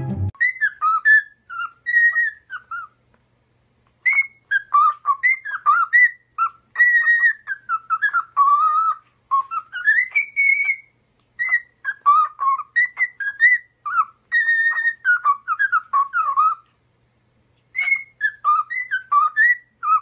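Cockatiel whistling a tune: a long run of short whistled notes that glide up and down, broken by two pauses of about a second.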